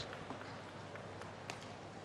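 Faint indoor arena ambience, a low steady background hubbub with a couple of soft clicks a little past a second in.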